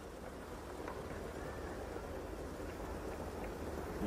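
Steady background ambience from a film soundtrack: a low rumble under an even hiss, with no distinct events.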